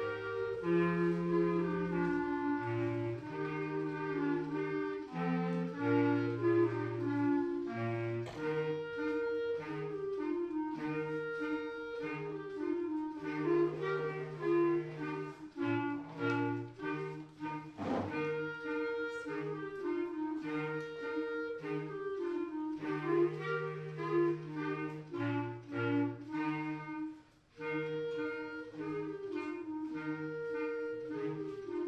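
Clarinet choir playing a light piece in several parts: melody lines over a lower part of short, bouncing notes and a few longer held ones. There is one brief click about two-thirds of the way through, and a short pause near the end.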